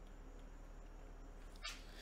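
Quiet room tone with a single short, sharp click about a second and a half in.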